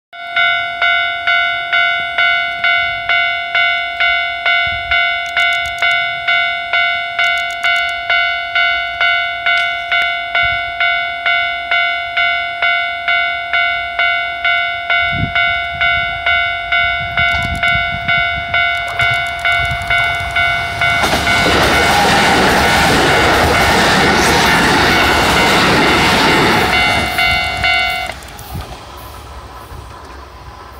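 Japanese level-crossing warning bell ringing in a steady repeating ding, about three strokes every two seconds. About two-thirds of the way through, a Kintetsu 5800-series electric train passes close by with a loud rushing rumble over the bell. Shortly after the train has gone, the bell stops and only a faint rumble is left.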